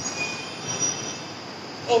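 Steady background noise, a rushing hiss with a few faint, brief high-pitched whistling tones in it.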